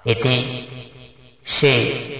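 A Buddhist monk's voice reciting in a slow, intoned chant: two phrases, each starting loud and trailing off.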